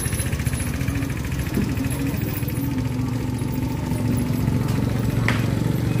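A motorcycle engine running steadily, with people talking in the background.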